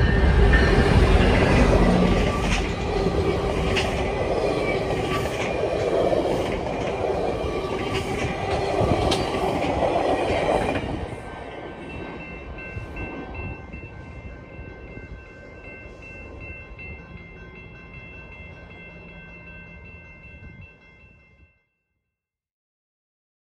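A GO Transit MP40PH-3C diesel locomotive hauling bilevel coaches passes close at speed, its engine running loud with wheels clacking over rail joints. About halfway it cuts to level-crossing bells ringing steadily with a passing train quieter underneath, fading out near the end.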